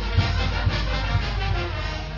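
Brass band music with a steady beat of about two a second.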